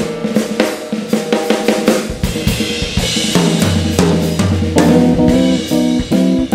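Jazz trio of piano, electric bass guitar and drum kit playing live, the drums to the fore with many quick hits over the piano. Deep bass notes come in strongly a little past halfway.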